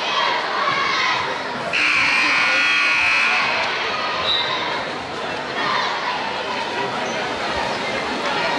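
Gymnasium scoreboard buzzer sounding once, a steady electric horn tone lasting about two seconds, beginning a couple of seconds in, over the chatter of a large crowd. It signals the end of a timeout.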